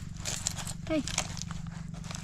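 Fingers mixing and squeezing a tomato salad in a steel bowl, with light clicks and rustles, over a steady low hum. A short bit of voice comes about a second in.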